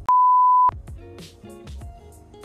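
A single loud, steady electronic beep on one pure pitch, lasting under a second. Background music comes in right after it.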